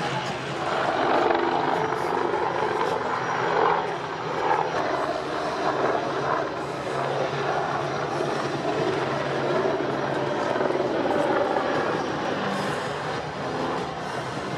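Eurocopter Tiger attack helicopter flying a display, its rotor and twin turboshaft engines making a steady drone that swells and eases a little as it manoeuvres.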